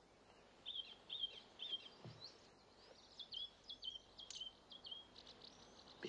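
Faint birdsong: short high chirping notes, a few spaced out early and a quicker string of them in the second half, with one soft low knock about two seconds in.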